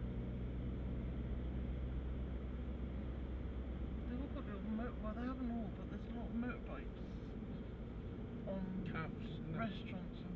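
Cabin sound of a Mini Cooper S with a 2.0-litre turbo engine being driven at a steady speed: an even engine hum and road noise. A voice talks quietly over it from about four seconds in, and again near the end.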